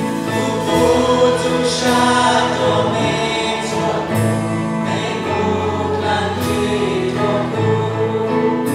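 Live worship band playing a praise song: voices singing over electric guitars, bass and drums, with a cymbal crash about every two seconds.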